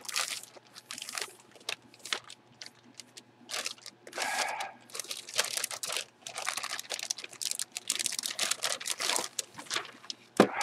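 Clear plastic poly bag crinkling and crackling in irregular bursts as a folded football jersey is pulled out of it by gloved hands.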